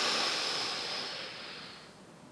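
A deep breath drawn in, a long airy hiss that fades away over about two seconds.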